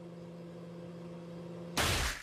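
Microwave oven running with a steady low hum, then near the end a sudden loud blast as the contents explode inside it.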